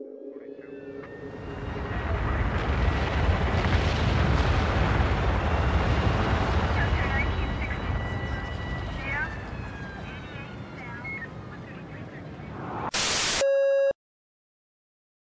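A low, distant rumble swells over a couple of seconds, holds, then slowly fades, with faint high whistling tones and a few chirps over it. Near the end a short, very loud burst of harsh noise is followed by a steady electronic tone that cuts off suddenly.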